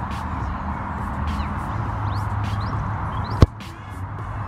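A football struck hard once, a single sharp thump of a boot on the ball about three and a half seconds in, over a steady rumble of distant motorway traffic.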